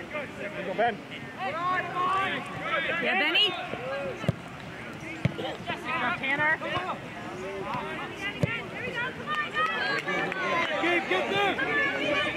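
Many voices shouting and calling across a soccer field during play, overlapping throughout, with three sharp thuds in the middle.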